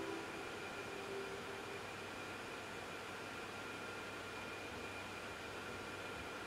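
The last held notes of the backing music die away within the first two seconds, leaving a steady hiss with faint, steady high-pitched tones in it.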